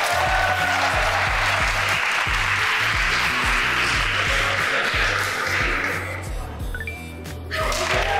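Group applause over background music with a steady bass line. The clapping stops about six seconds in and starts again near the end.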